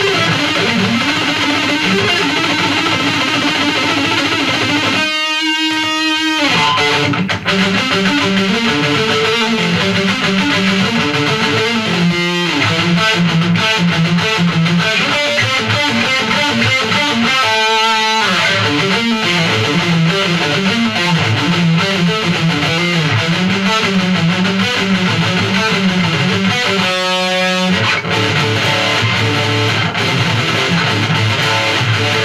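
Dean USA Dime Razorback electric guitar played through a Line 6 Spider III combo amp with distortion, in an improvised metal/blues lead. Runs of notes are broken by three or four long held notes.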